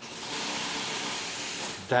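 A steady hiss of noise that starts abruptly and runs for nearly two seconds, then stops as speech resumes.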